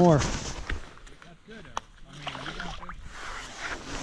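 Water sloshing in an ice-fishing hole as a released walleye goes back down, fading over about a second, followed by quieter handling sounds with one sharp click.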